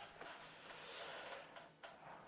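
Near silence: room tone with a faint hiss and a couple of faint clicks near the end.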